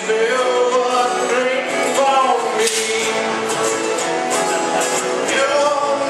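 Live singing with acoustic guitar: voices, a man's among them, sing a song together to a strummed acoustic guitar.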